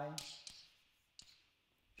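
Chalk on a blackboard as an equation is written: a short scratchy stroke just after the start and a single sharp tap about a second in.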